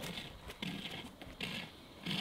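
Small dog sniffing with its nose pushed into a hole in the snow: a few short, faint breathy bursts.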